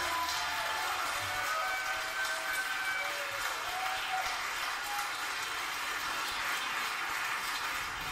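Audience applauding steadily after a song ends, with a few short cheers.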